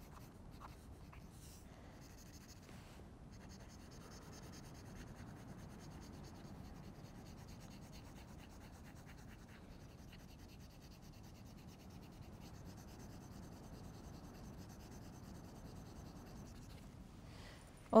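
Pencil graphite scratching faintly and steadily across paper as tone is shaded in with strokes.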